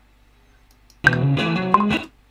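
Recorded guitar solo loop played back from a DAW: after a pause, a quick flurry of guitar notes starts suddenly about a second in and cuts off sharply about a second later as playback stops. It is auditioned to find where the bar's playing actually begins.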